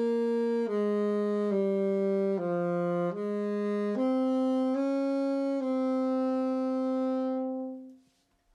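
Alto saxophone playing a slow melody of about eight held notes, stepping down and then back up, ending on a long sustained note that stops shortly before the end.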